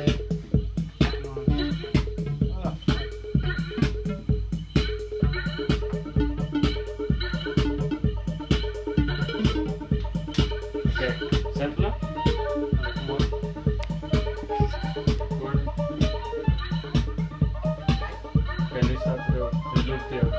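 Electronic music played on hardware synthesizers and drum machines: a steady kick drum about two beats a second under repeating synth lines.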